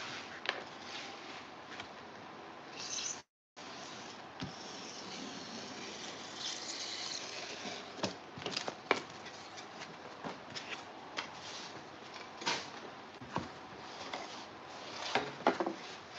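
Faint rustling and scattered light taps as a large printed foam board is shifted and pressed flat on a cutting mat. The audio drops out completely for a moment about three seconds in.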